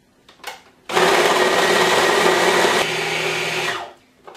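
Food processor motor switched on about a second in, running steadily while blending a thick filling of apples, dates, walnuts and soaked chia seeds, then cut off just before the end.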